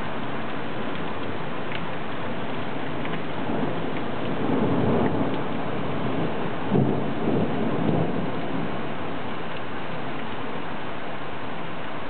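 Heavy rain falling steadily, with thunder in the middle: a rumble swells about four seconds in, then a sharper clap comes near seven seconds and rolls on for about a second.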